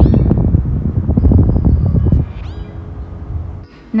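Wind buffeting the microphone, with short gull calls above it. The wind drops away about two seconds in, and a few quick rising gull squeals follow.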